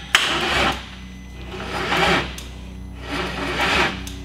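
Starter motor trying to crank a VW 24-valve VR6 engine, turning it over very slowly in three rasping pulses about a second and a half apart without the engine catching. The crank is slow and dragging, which the crew suspect is a bad starter.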